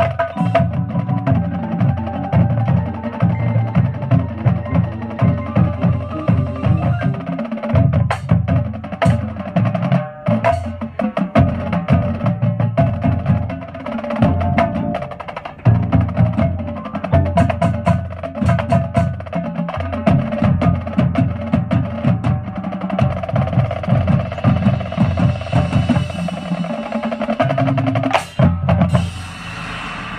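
High school marching band playing a fast, drum-heavy passage: rapid bass drum and snare strokes over mallet keyboards and a held mid-pitched chord. The music stops about a second before the end.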